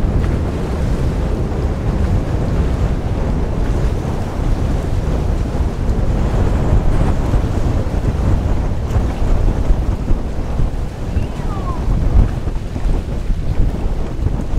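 Wind buffeting the microphone: a loud, gusting low rumble, over open choppy water.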